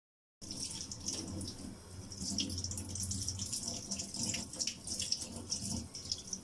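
Tap water running into a sink, a steady splashing hiss that starts about half a second in.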